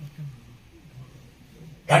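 A pause in a man's microphone speech, with a few faint, short low sounds, before his voice comes back loudly near the end.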